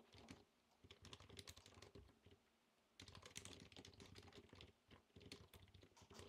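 Faint typing on a computer keyboard, a quick run of key clicks with a short pause about two seconds in before the typing picks up again.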